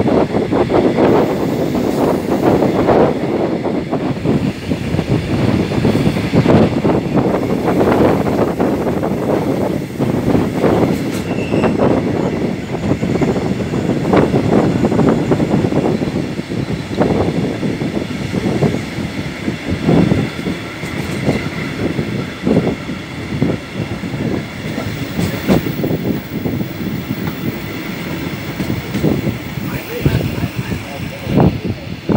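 Passenger train coaches running along the track, heard through an open window: a steady rumble of the wheels on the rails with frequent irregular knocks and clatter.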